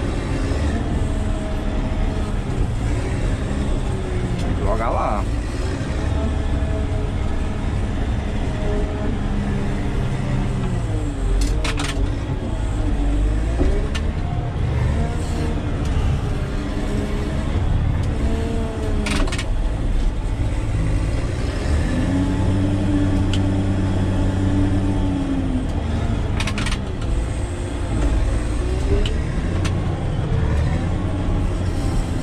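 Caterpillar 120K motor grader's diesel engine running under load, heard from inside the cab, its pitch rising and falling slowly as the revs change. A few sharp knocks come through, about midway and again later on.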